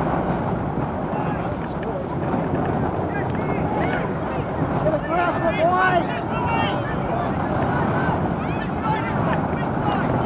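Steady wind rumble on the microphone, with distant shouting voices of players and sideline spectators at a soccer match, busiest in the middle of the stretch.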